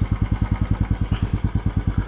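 Royal Enfield motorcycle engine idling at standstill, a steady even beat of about ten pulses a second.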